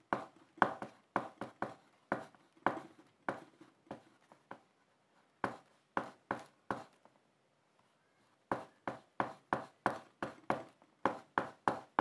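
Oil pastel stick scratching on paper in short directional strokes, about two or three a second, with a pause of a second or two past the middle before the strokes resume more quickly.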